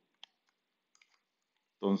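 A sharp click, then two faint clicks about a second later, against near silence: small handling clicks from a sheathed knife being handled. A man's voice comes in near the end.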